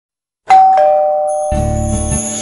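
Doorbell chime sounding two falling notes, ding-dong, about half a second in, the notes ringing on. Music with a low beat comes in about a second and a half in.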